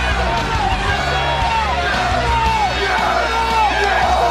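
Two men shouting "Yes!" and "No!" back and forth in short, repeated falling shouts, over arena crowd noise and loud entrance music.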